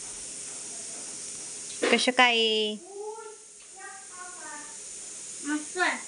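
High-pitched children's voices over a steady background hiss: a loud, drawn-out vocal sound about two seconds in, followed by short high phrases that bend up and down in pitch near the middle and the end.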